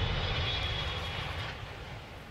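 Aircraft engine noise: a low rumble with a faint steady high whine, dying away steadily as the aircraft moves off.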